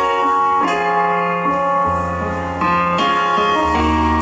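A live rock band playing sustained keyboard chords that change every second or so, over a steady bass line.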